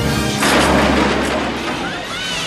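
DeLorean time-machine time-travel sound effect: a sudden loud boom about half a second in that rumbles on and slowly fades, over orchestral music.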